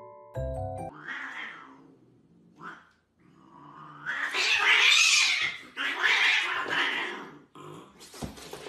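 Two cats, a white cat and a hairless Sphynx, in a standoff, hissing and yowling at each other: a short hiss about a second in, then a long, loud hissing yowl from about three seconds in that swells and breaks off in a few phrases near the end. A few mallet-percussion music notes sound at the very start.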